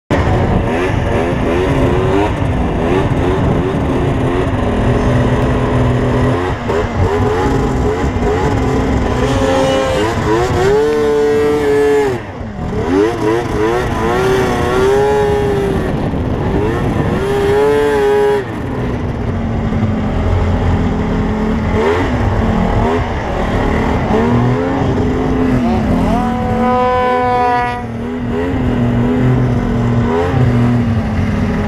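Yamaha Mountain Max 700 snowmobile's two-stroke triple engine running hard through deep powder, its pitch rising and falling over and over as the throttle is worked, with a brief drop in level about twelve seconds in.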